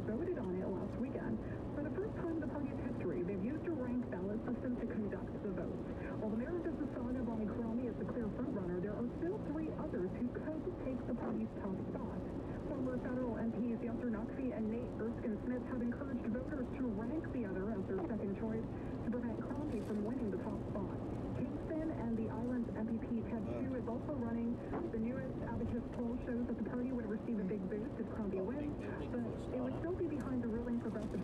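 A radio news voice playing inside a car cabin, too muffled to make out, over the car's steady engine and road noise.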